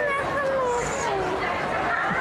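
Speech: people talking.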